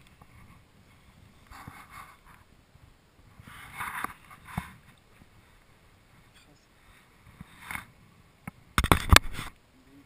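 Shallow water splashing in a few short bursts as a hooked fish is landed by hand at the water's edge. Near the end comes a quick flurry of loud knocks and handling noise as the fish is grabbed and lifted.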